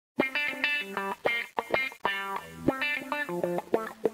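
Music: a plucked-string instrument playing a quick melodic run of single notes, each with a sharp attack.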